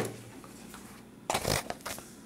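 Handling noise as pages are moved under the camera: a sharp knock right at the start, then about half a second of paper rustling and rubbing on the desk.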